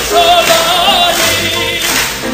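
A cantor (chazan) singing chazanut, holding one long high note with a wide vibrato over musical accompaniment.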